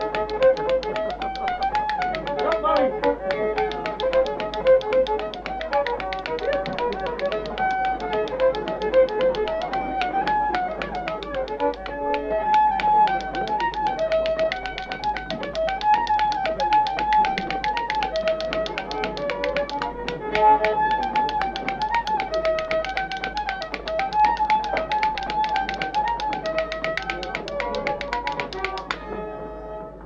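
A lively folk tune played on a single melody instrument, over a rapid, steady tapping beat. The music dips just before the end.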